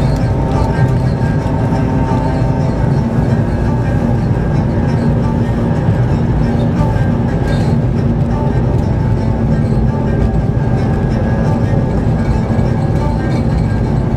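Steady engine and tyre rumble heard inside a moving car's cabin at highway speed, with music from the car radio playing under it.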